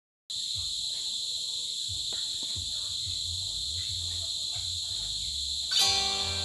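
Crickets chirring in a steady, high chorus. Guitar music comes in just before the end.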